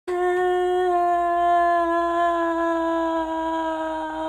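A woman's long, drawn-out mock wail of dismay, one held note whose pitch sags slightly.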